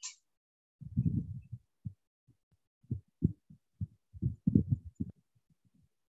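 A short sharp click, then irregular muffled low thumps and knocks for about four seconds, like handling or bumping noise picked up by a microphone.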